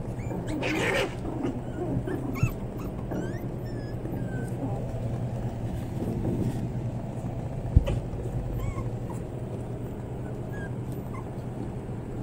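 Young puppies whimpering, with many short, high, gliding squeaks scattered throughout, over a steady low hum. A sharp knock sounds about eight seconds in, and a smaller one about two seconds in.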